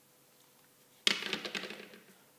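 Near silence, then about a second in a sudden plastic clack and rattle as the syringe and vial are handled in and out of the hard plastic case of a glucagon injection kit, dying away quickly.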